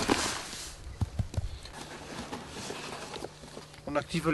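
A burst of rustling from clothing and fur as a captured mouflon is held and handled, followed by a few soft knocks and scuffs.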